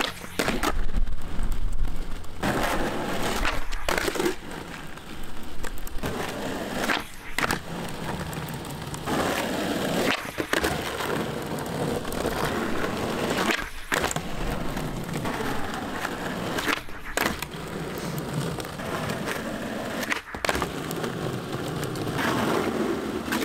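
Skateboard wheels rolling on rough asphalt, broken every few seconds by sharp wooden clacks, often in quick pairs, as the tail is popped and the board lands during flatground no comply tricks.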